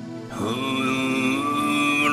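Background music: a sustained drone chord, joined about half a second in by louder held melody notes that glide up into pitch and bend.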